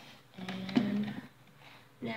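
A woman's short wordless murmur, with a light knock as a bottle is handled on a table about halfway through.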